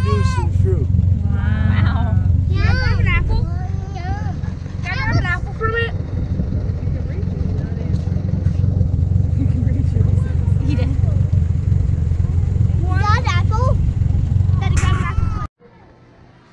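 Steady low rumble of a tractor pulling a hay-ride wagon, with voices over it. It cuts off suddenly near the end.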